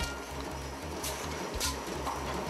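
Background music with a steady low bass pattern. Over it, a mechanical power press clanks twice, about a second in and again at about a second and a half, as it turns up the rim of a hand-hammered iron wok.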